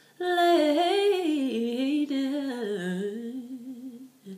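A soprano singing a cappella: one wordless gospel phrase that begins just after the start, winds through quick runs while drifting down in pitch, and fades away near the end.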